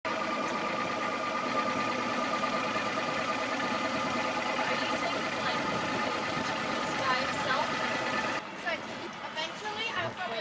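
A motorboat engine idling with a steady drone, with people talking over it. The drone drops off abruptly about eight seconds in, leaving quieter talk.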